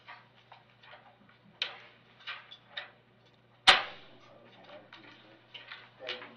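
Scattered light clicks and knocks of handling noise on a courtroom microphone, with one sharp, much louder knock about two-thirds of the way through, over a faint steady hum.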